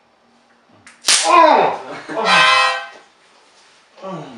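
A man being tasered cries out through the harmonica clenched in his mouth: a short snap about a second in, then a loud yell that falls in pitch, and a held, reedy harmonica chord.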